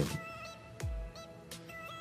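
Background electronic dance music: held synth tones and short high synth notes over percussion, with a deep kick drum about a second in.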